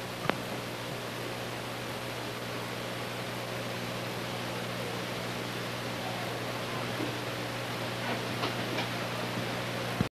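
Steady hiss with a low hum from an old recording, broken by a sharp click about a third of a second in and a few faint ticks near the end.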